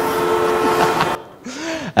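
Soundtrack of a video playing over the venue's PA: a steady rushing noise with faint held tones, cut off suddenly a little over a second in as the video is skipped. A short rising-and-falling hum from a man's voice follows near the end.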